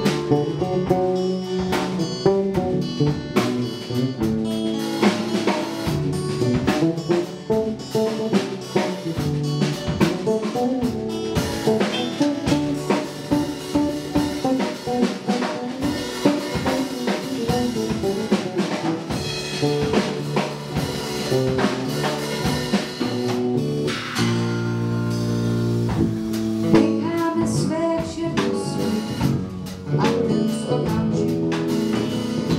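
Live band music: acoustic guitars with a drum kit keeping a beat, captured by an amateur recording.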